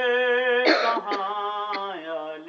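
A man's voice holding a long sung note in a devotional recitation, broken about two-thirds of a second in by a loud cough, with two faint clicks after it.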